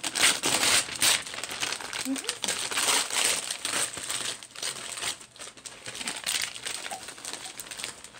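Gift wrapping crinkling and rustling in irregular bursts as a flat present is unwrapped by hand.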